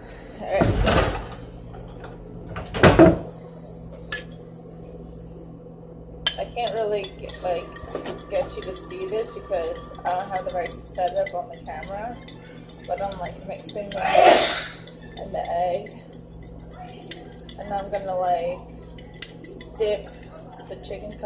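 Utensil beating egg and milk in a bowl: rapid light clinking against the bowl from about six seconds in. Before that come two loud clatters, about two seconds apart.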